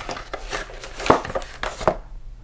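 Handling of a cardboard retail phone box and the parts inside it: light rustling with a few short clicks and knocks, the sharpest about a second in.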